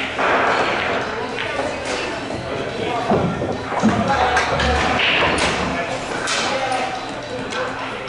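Indistinct background voices of people talking in a pool hall, with scattered knocks and thuds.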